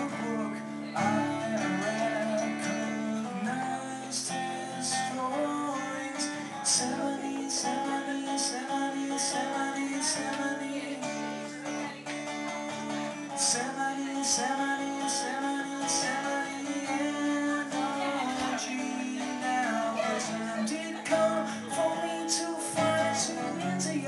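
Acoustic guitar strummed, a steady run of chords with regular strokes.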